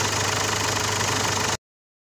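Mazda WE 3.0-litre four-cylinder turbo-diesel in a Ford Ranger idling steadily with an even pulse, running after a crank-no-start. The sound cuts off suddenly about a second and a half in.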